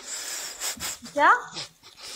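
Speech: a short spoken 'kya?' with a sharply rising, questioning pitch about a second in, after a moment of soft breathy noise.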